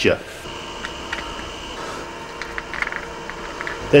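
Quiet steady background noise with a thin, steady high whine for a second or so and a few faint light clicks.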